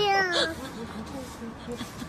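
A kitten meowing once: a drawn-out call in the first half-second, followed by faint scuffling and small squeaks.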